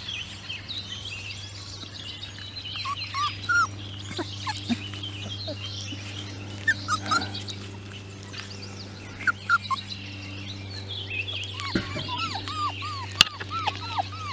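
Five-week-old beagle puppies squeaking and whimpering in short, high, arching squeals, in quick runs near the end, over a background of bird chirps. A steady low hum comes in about halfway through.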